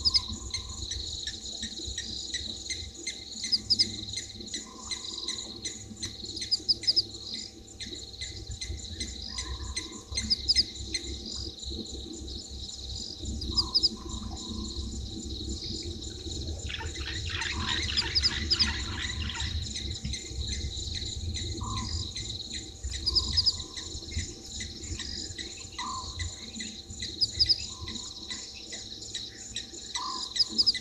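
Night chorus of crickets trilling steadily, with short calls repeating every couple of seconds and a denser patch of rapid calls for about three seconds a little past the middle, over a low rumble.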